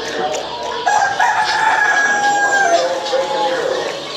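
A rooster crowing once, starting about a second in and lasting about two and a half seconds, dropping in pitch at the end, over a murmur of voices.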